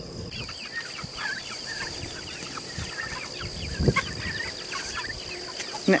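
A flock of young chickens in a pen, many short overlapping cheeping calls going on throughout, over a steady high insect trill. One dull thump about four seconds in.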